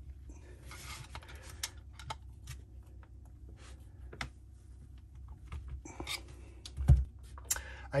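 Light metallic clicks and scrapes of a screwdriver levering behind the drive gear of a raw water pump, the gear held fast on its tapered shaft and not breaking loose, with one heavier knock about seven seconds in.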